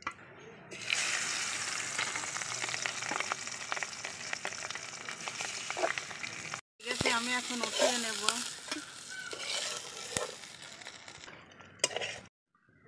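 Rohu fish pieces sizzling in hot oil in an aluminium kadai, with a metal spatula working in the pan, as they are fried hard to a deep red-brown for kalia. The sizzle starts sharply about a second in, breaks off suddenly around the middle, then returns and fades near the end.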